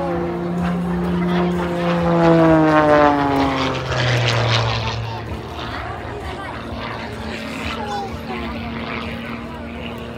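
Extra 300 aerobatic monoplane's propeller engine droning overhead. Its note falls steeply in pitch about three to four seconds in, then runs on at a lower, steadier note.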